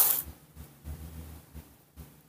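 A brief, sharp rustle or scrape right at the start, fading within a fraction of a second. Faint low knocks and rumble of hand handling follow.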